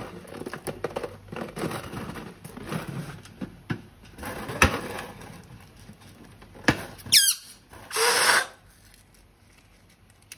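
Hands rubbing and squeezing an inflated latex balloon, the rubber squeaking and creaking, with a couple of sharp clicks. About seven seconds in the stretched neck lets out a squeal that falls in pitch, followed by a short rush of air escaping from the balloon as it is let down.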